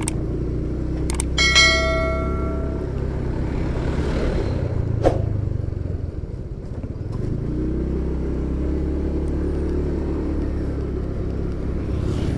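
Motorcycle engine running steadily under way, with road noise. It eases off about six seconds in, then picks up again. Early on a steady pitched tone sounds for about a second and a half, and a single sharp click comes about five seconds in.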